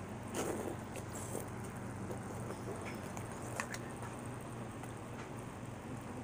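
A steady low hum of room or appliance noise, with a few brief rustles and clicks: one about half a second in, another after about a second and a half, and a sharp click at about three and a half seconds.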